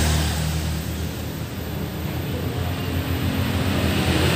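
A motor vehicle engine running, low and uneven.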